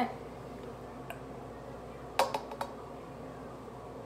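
Coconut cream being emptied from a metal can into a plastic cup: a few sharp knocks and clicks of the can and cup being handled, a faint one about a second in and a quick cluster of three, the loudest, a little past two seconds.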